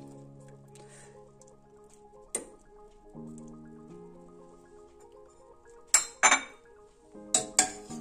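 Metal clinks of a slotted spoon and fork knocking against a stainless steel pot as boiled chicken is lifted out of the cooking water: one about two seconds in, two louder ones near six seconds and a few more near the end, over quiet background music.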